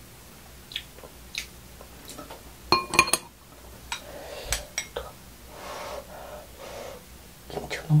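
Metal spoon and chopsticks clicking and scraping against a small glass bowl as fried rice is scooped up, with one loud ringing clink about three seconds in.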